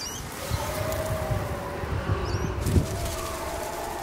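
Suburban street sound: a low rumble with a steady hum from traffic, and two short high bird chirps, one at the start and one a little after two seconds in.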